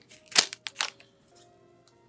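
Foil trading-card pack wrapper crackling as the stack of cards is pulled out of it: a few sharp crinkles in the first second, the loudest about half a second in.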